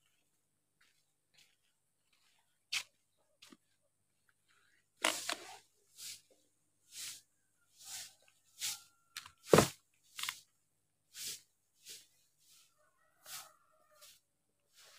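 Footsteps on a concrete path, roughly one a second, starting about a third of the way in after a few scattered clicks.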